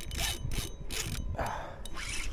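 Spinning reel being cranked under load while fighting a hooked jack, its gears and line giving a rhythmic rasping scrape several strokes a second.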